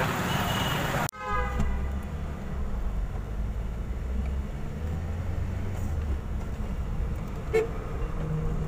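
About a second in, street noise cuts to the low, steady rumble of a car driving on a highway, heard from inside the cabin. A vehicle horn toots briefly right at the change, and a short toot sounds again near the end.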